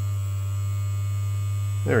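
Small DC vibration motor with an offset weight, the buzzer in an Operation game's nose, running and buzzing with a steady low hum while powered at about 2.7 volts.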